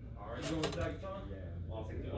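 Indistinct speech that the transcript does not catch, with a few light clicks about half a second in.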